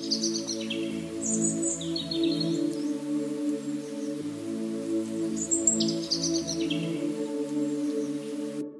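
Calm ambient background music of held, slowly changing chords, with high bird-like chirps at the start, around a second and a half in, and again near six seconds.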